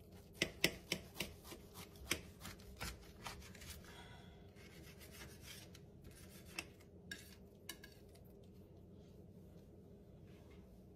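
A knife sawing through a toasted sandwich: a quick run of crisp crunches and taps against the board in the first few seconds, then a few scattered taps.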